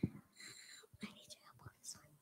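Faint whispering, soft and hissy with no full voice.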